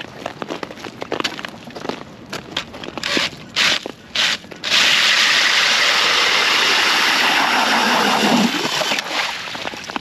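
Cordless drill spinning an ice auger into lake ice: scattered knocks and handling sounds, then about halfway in a loud steady grinding hiss of the bit cutting and throwing ice chips, which eases off near the end as it breaks through to water. The ice being cut is about ten inches thick and fairly solid.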